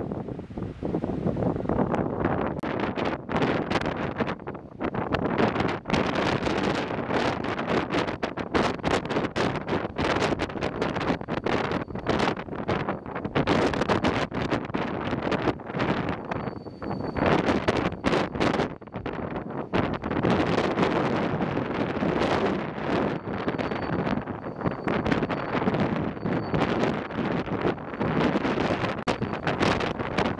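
Wind buffeting the microphone in strong, uneven gusts over a burning wildfire, with dense crackling throughout.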